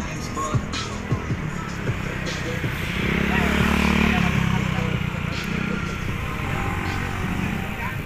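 Street traffic heard from a moving bicycle: a steady rush of road and wind noise, with a motorcycle engine swelling past from about three seconds in to about five.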